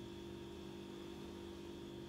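A faint, steady hum of a few held tones over light hiss.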